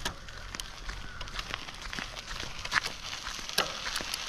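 Hero Lectro C7+ electric cycle pedalled as a plain bicycle with its motor off, rolling over a gritty dirt yard: irregular light clicks and crackle from the tyres and drivetrain, with no motor sound.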